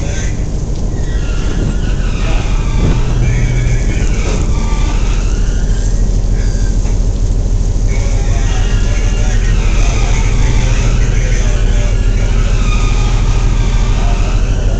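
Loud, steady drone of machinery aboard a trailing suction hopper dredge, with a strong low hum. Fainter wavering higher-pitched sounds come and go over it.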